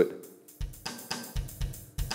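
Funk drum-kit beat with a lot of added syncopation: kick drum, snare and hi-hat hitting in an irregular pattern that starts about half a second in. The beat is made too complex and unpredictable to groove to.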